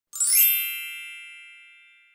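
A single bright chime sound effect, struck once and ringing with several high tones as it fades away over about two seconds.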